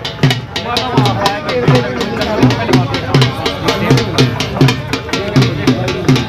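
Dhol drum played in a fast, steady rhythm: deep bass strokes about twice a second with quicker sharp strokes between them.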